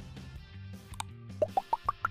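Background music with a cartoon sound effect from a subscribe-button animation: a short click about halfway through, then five quick plops rising in pitch near the end.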